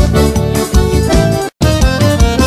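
Instrumental forró pé-de-serra: accordion (sanfona) melody over steady zabumba bass-drum beats and triangle strokes. About a second and a half in, the music cuts to silence for a split second and then starts again.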